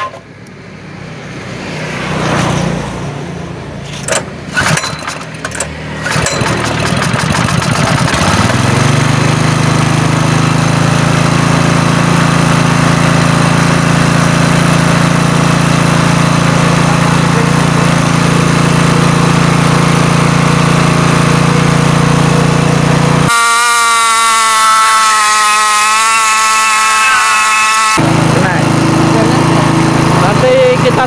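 Mollar GX200 6.5 hp single-cylinder four-stroke engine, fed LPG through a homemade gas carburettor while its gas and air setting is being adjusted. It runs unevenly with sharp knocks at first, then picks up speed about eight seconds in and settles into steady running. Near the end a wavering horn-like tone replaces it for several seconds before the engine sound returns.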